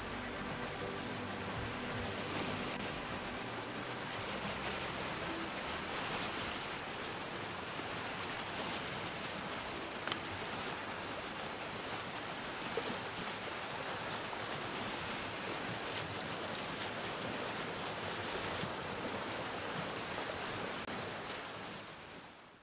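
Sea surf: a steady, even wash of waves, fading out at the end.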